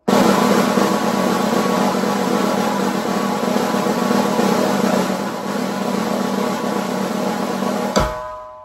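Snare drum press roll (buzz roll): both sticks pressed into the head near the edge, each stroke buzzing with several rebounds and the hands overlapping into one sustained, even roll. It starts abruptly and holds steady throughout.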